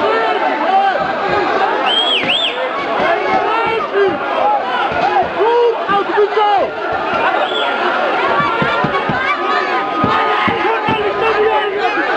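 Large crowd of men shouting and yelling at once, many voices overlapping in a dense, loud din with a few shrill cries above it.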